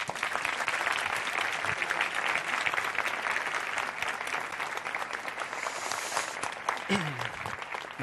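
Audience applauding, a dense patter of many hands clapping that thins out near the end.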